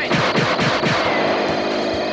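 Synthesized laser-beam sound effect: a rapid cluster of falling electronic sweeps, strongest in the first second, over a steady held background score.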